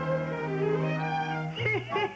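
Orchestral film score: strings hold a sustained chord. Near the end a bending, voice-like sound comes in.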